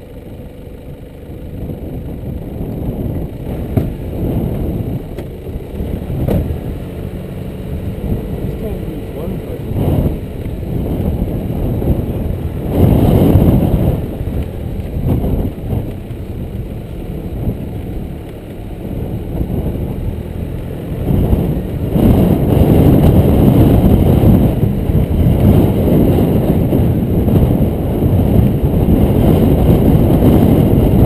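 Nissan Navara D22 4WD driving slowly along a dirt track: engine and tyres making a steady low rumble that swells briefly a few times and grows louder about two-thirds of the way in.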